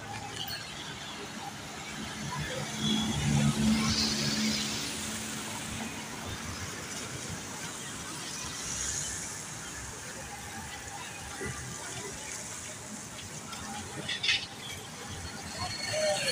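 Street ambience of slow traffic on a wet road: vehicle engines running and tyre hiss on wet tarmac, with a louder engine hum a few seconds in as a vehicle passes close by.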